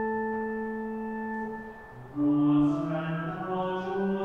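Church organ holding a steady chord that fades away a little before halfway. After a brief gap a voice begins singing over organ accompaniment, the start of the sung responsorial psalm.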